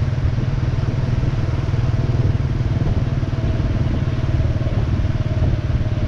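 Motorbike riding in city traffic: steady engine and road noise under heavy wind rumble on the microphone, with a faint steady whine through most of it.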